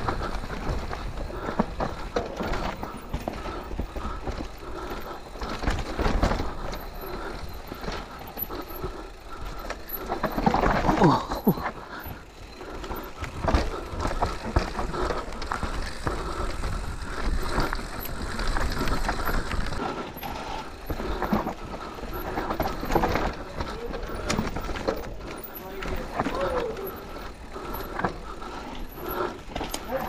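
Intense Tazer MX electric mountain bike descending a rough forest trail: tyres rolling and crunching over dirt and rock, with the bike rattling and knocking over bumps throughout.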